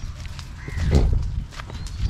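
Footsteps on dry sandy soil with a low wind rumble on the microphone that swells about halfway through, and a couple of short bird chirps.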